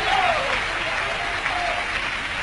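Congregation applauding steadily in response to a call to praise the Lord.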